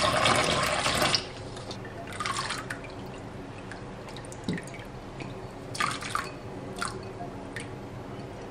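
Tap water running into a stainless-steel saucepan, stopping about a second in. Then a few scattered light splashes and drips as sweetcorn kernels are tipped from a glass bowl into the water in the pan.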